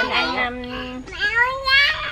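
Drawn-out, sing-song voices with no clear words: a held note for about a second, then a rising one.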